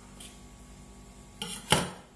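Faint steady room hum, then near the end a short knock followed by one sharp metallic clank of kitchenware being handled.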